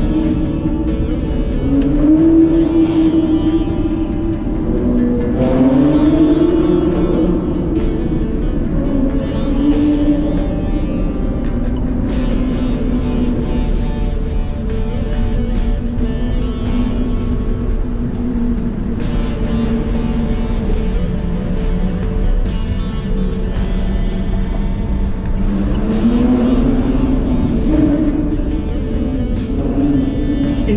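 A car engine revving up and easing off again and again in a road tunnel, each rev a rise and fall in pitch lasting a second or two, over background music.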